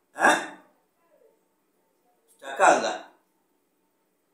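Two short vocal sounds from a man, each about half a second long and falling in pitch, about two seconds apart.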